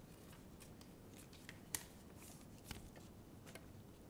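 Near silence: quiet meeting-room tone with a few faint, short clicks and rustles of small handling noises at the desks, the clearest a little under two seconds in and again near three seconds.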